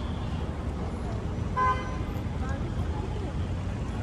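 Steady low city street and traffic noise, with one short vehicle horn toot about a second and a half in.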